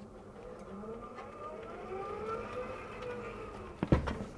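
Sliding chalkboard panel moving along its track, giving a long wavering whine of several gliding tones, with a knock near the end as it comes to a stop.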